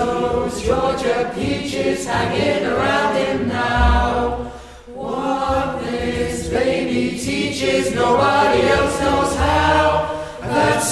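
A group of teenage boys singing a part song together, with a brief break between phrases about five seconds in.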